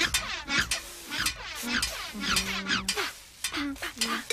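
Handsaw cutting a thin wooden batten in rhythmic rasping strokes, about two to three a second, over a backing of synthesized music with held low notes.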